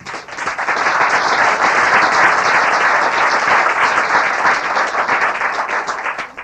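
Audience applauding, with many hands clapping at once. It swells up at the start, holds steady, and begins to die away at the very end.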